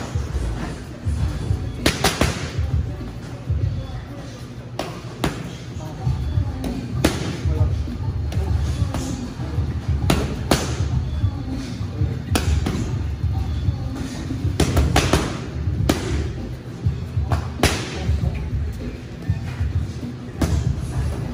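Gloved punches landing on boxing focus mitts: sharp smacks at irregular intervals, often in quick combinations of two or three. Music with a heavy bass plays underneath throughout.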